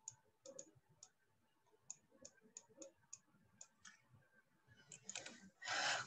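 Faint, irregular clicking, about a dozen sharp clicks spread over a few seconds, typical of a computer mouse being clicked.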